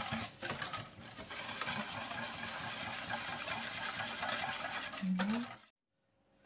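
Wire balloon whisk beating poppy seeds and milk in a stainless steel saucepan: a rapid, even run of metallic scraping and clicking against the pot. It cuts off suddenly near the end.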